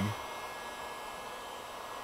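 Electric heat gun running steadily, a constant blowing hiss, as it warms the curing resin of a laminated prosthetic socket.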